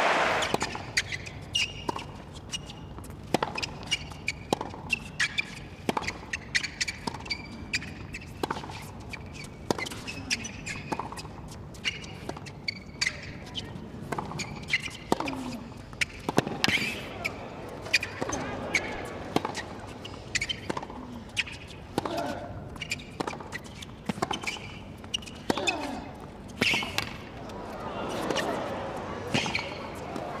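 A long tennis rally on a hard court: sharp racket-on-ball hits and ball bounces follow each other about every second or less. Players grunt on some shots, over a low, steady crowd hum.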